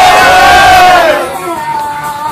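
A group of people shouting together in one loud collective cheer, many voices at once, which dies down about a second in.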